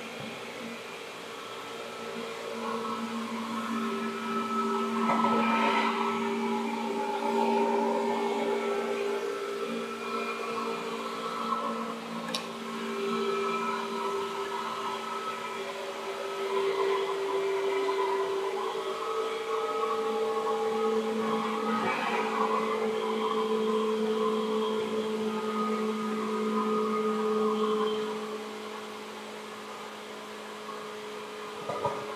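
Seibu 2000 series electric commuter train running between stations: a steady whine of the motors and gears with several tones that drift slightly in pitch as the speed changes, over a running rumble. There is a single sharp click about twelve seconds in.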